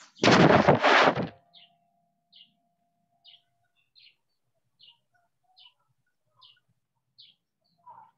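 A short burst of voice in the first second, then a faint high chirp repeating evenly about every 0.8 seconds, like a small bird calling in the background.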